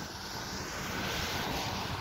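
A passing vehicle's rushing noise, building gradually to about a second and a half in and then easing off a little.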